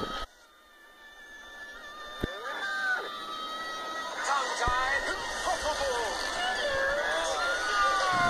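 Animated film soundtrack playing from a TV speaker: it cuts off abruptly just after the start, then builds back up with music and voices.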